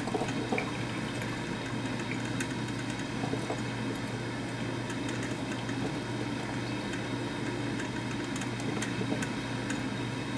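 Black & Decker thermal-carafe drip coffee maker brewing: a steady hiss and gurgle of heating water with many small scattered pops and drips, over a low steady hum.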